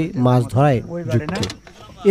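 A man's voice speaking; no other sound stands out.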